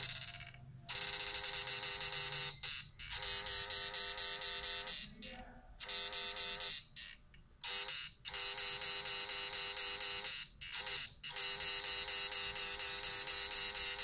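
Electrical buzz from a homemade push-pull inverter running on pulse-chopped drive: a steady high-pitched tone with many overtones. It drops out briefly several times as the chopping board is adjusted.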